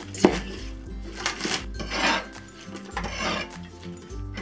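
A cleaver knocks once on a wooden cutting board, then three rasping scrapes as the cut green onions are swept across the board.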